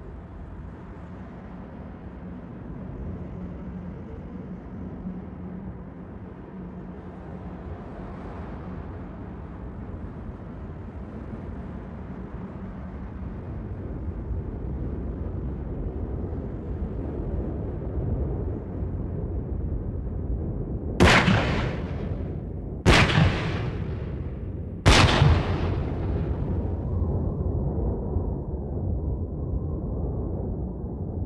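A steady low rumble that slowly grows louder, then three gunshots about two seconds apart, each a sharp, loud crack with a short fading tail.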